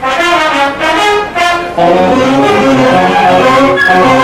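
Marching band brass playing: short, repeated phrases for the first two seconds, then the full band with low brass and sousaphones comes in on a louder, sustained passage.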